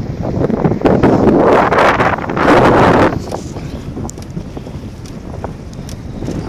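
Wind buffeting the microphone of a camera carried on a moving bicycle: a loud rush of gusts in the first half, then a lower, steadier rumble.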